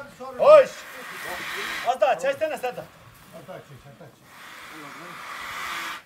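Men's short shouts, a loud one about half a second in and a quick string of calls around two seconds, with two stretches of steady hiss, the second swelling and cutting off abruptly at the end.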